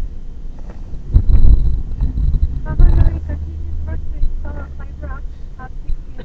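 Low, steady rumble of a car heard from inside the cabin, swelling louder about a second in and again around three seconds, with indistinct voice sounds over it.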